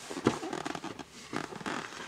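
A large picture book being handled: its paper pages and card cover rustling and scraping in a quick, irregular run of small clicks and scuffs.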